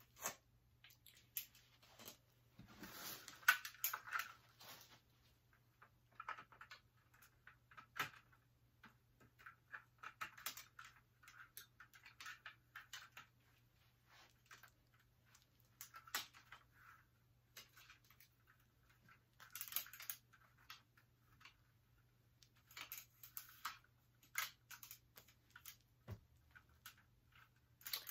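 Faint, scattered clicks and rustles of a plastic and metal light stand being handled and fitted with its ring light, over a low steady hum.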